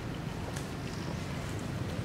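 Steady low outdoor rumble, with a few faint ticks and rustles over it.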